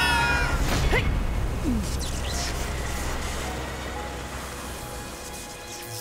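Cartoon sound effects: a rushing wind with a deep rumble from a giant electric fan, fading away over several seconds. At the start a character's long wailing cry trails off, and a few short whistling glides follow.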